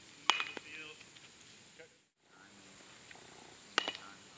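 Baseball bat meeting pitched balls on two bunts: a sharp crack with a brief ring about a third of a second in, and another near the end.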